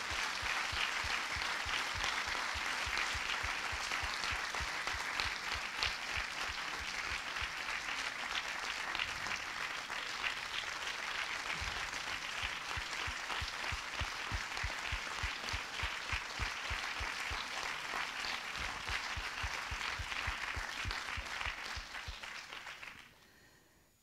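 Cinema audience applauding for about twenty seconds, the clapping thinning and dying away near the end.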